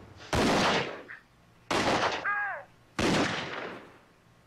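Three single gunshots about a second and a half apart, each a sharp crack ringing out for about half a second.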